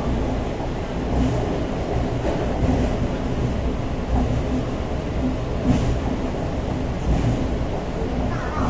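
Shanghai Metro Line 4 train running, heard from inside the passenger car: a steady low rumble with a few short knocks.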